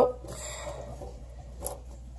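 Quiet handling noise: hands rubbing and shifting against a small blue-framed glass aquarium, with one short click about one and a half seconds in.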